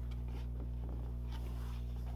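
Faint rustle and sliding of cardstock as a card is pushed into a paper envelope, over a steady low hum.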